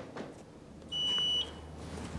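A single high-pitched electronic beep, one steady tone about half a second long.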